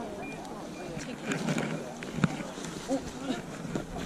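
Background chatter of several people outdoors, with light rustling and handling noises and a sharp knock a little over two seconds in.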